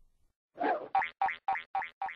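Cartoon sound effect: after a short silence, a run of short pitched blips at one steady pitch, about four a second.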